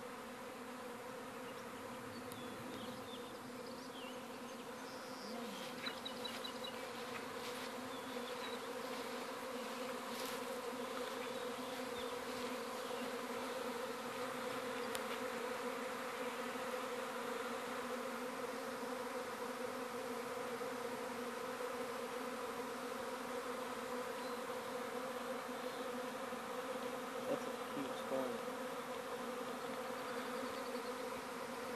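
Swarm of honeybees in flight, a steady dense hum of many wingbeats that grows a little louder over the first few seconds.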